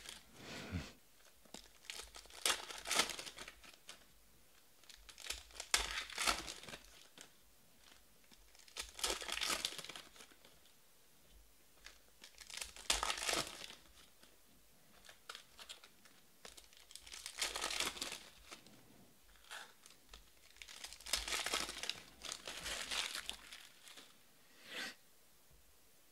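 Trading-card pack wrappers being torn open and crinkled in the hands, in about seven bursts a few seconds apart, with quiet handling between them.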